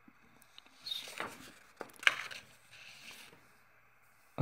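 Soft kitchen handling sounds as naan dough and a small glass bowl are handled on a worktop: light rustling with a few sharp clicks about two seconds in.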